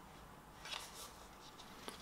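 Faint handling of a CD and its card sleeve: a soft brief scrape a little under a second in, and a light click just before the end.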